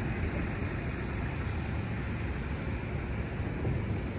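Steady noise of road traffic on the highway bridge alongside the pier, an even wash with no single vehicle standing out.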